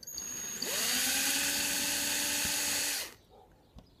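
Bosch drill with a half-millimetre bit boring a fine hole into Rimu wood for a silver wire inlay. The motor winds up about half a second in, whirs at a steady pitch, and stops about three seconds in.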